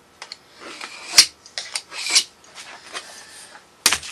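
A metal scribe scratching short layout lines on sheet metal along a straightedge, with sharp clicks as the rule and scribe touch and are set on the sheet, loudest about a second in and near the end.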